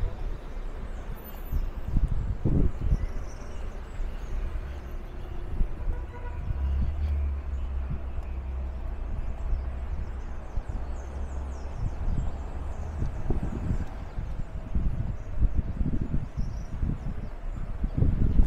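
City street ambience: car traffic going by and gusts of wind rumbling on the microphone, with a steadier low rumble for several seconds in the middle.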